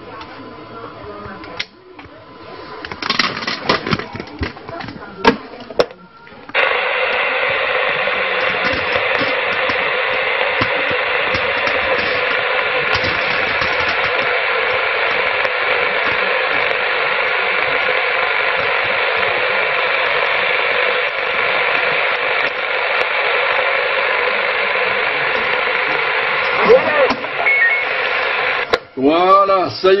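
CB radio receiver sound from the speaker while the operator switches over to his other transceiver: crackle and clicks for the first six seconds, then a steady hiss of radio noise from about six seconds on.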